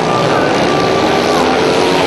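Speedway motorcycles racing, their 500cc single-cylinder methanol engines running hard together in a loud, continuous blare, with one engine's pitch dropping near the end.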